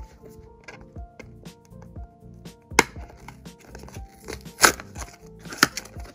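A small cardboard blind box being handled and torn open by hand: soft taps and rubbing of the card, with three sharp snaps of the cardboard flaps tearing free, the loudest about two thirds of the way through.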